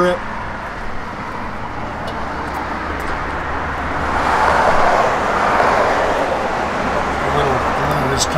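Road traffic noise from a passing vehicle: tyre and engine noise swells to a peak about halfway through and then fades, over a steady low rumble.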